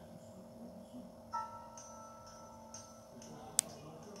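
Faint audio from a portable DVD player's small built-in speaker as a disc starts up, over a steady hum. About a second in, a soft two-note tone is held for about two seconds. A single sharp click comes just before the end.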